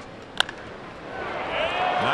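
A single sharp crack of a wooden baseball bat meeting a pitched ball, about half a second in, over the steady murmur of a stadium crowd. The crowd noise begins to swell near the end as the ground ball is played.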